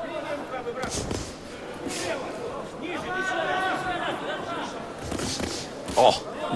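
Boxing ring sound in a large hall: sharp thuds of punches landing about one, two and five seconds in, with a voice calling out in the middle, all carrying a hall echo.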